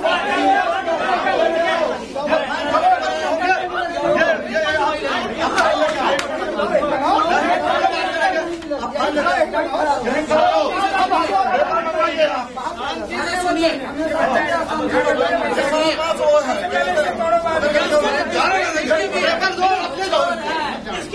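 A crowd of men arguing, many voices talking and shouting over one another at once, without a break.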